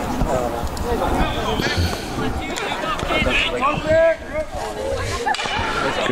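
Voices of spectators and players chattering and calling out, several overlapping at times.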